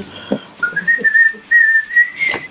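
Someone whistling: a note that steps up in pitch about half a second in, then long held notes with a short break between them.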